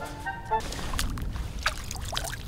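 River water sloshing and splashing as a plastic sieve full of sand is dipped and shaken in the shallows to wash the sand through, with a few short splashy knocks. A few brief musical notes sound at the start.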